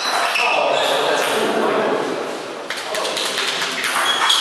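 Table tennis ball clicking off the table and bats: a few pings early, then a quick run of sharp clicks a little past halfway, over background voices in the hall.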